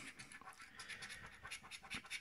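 A coin scraping the coating off a paper lottery scratch card in faint, quick rubbing strokes.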